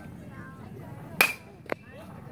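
A metal baseball bat striking the ball about a second in, a sharp crack with a brief ringing tone, followed half a second later by a smaller sharp click.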